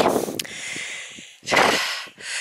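Breath noise from the man filming, close to the microphone: a soft breathy hiss that fades after his last word, then a loud, short intake of breath about one and a half seconds in.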